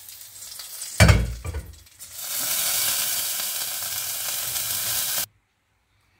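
Hot oil tempering of fried cumin, garlic and chilies sizzling on boiled, strained dal. There is a loud knock about a second in, then a steady sizzle that cuts off suddenly after about five seconds.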